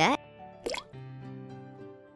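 A short cartoon plop sound effect, with a quick glide in pitch, as a bowling ball drops into a bowl of water. Soft background music follows with steady held notes.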